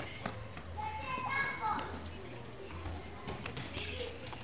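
Young children playing and running on a pavement: faint children's voices calling out, light taps of footsteps, over a low steady hum.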